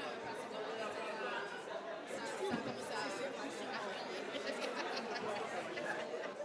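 Low, indistinct chatter of several people talking at once, with no single voice standing out.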